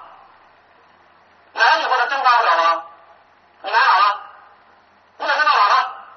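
Speech only: a person's voice demanding answers in an interrogation, in three short outbursts with pauses between them.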